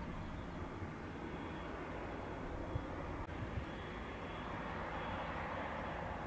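Grob G109 motor glider's engine running steadily at low power as it taxis, heard from a distance.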